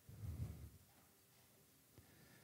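Near silence: room tone, with one faint low rumble in the first half second.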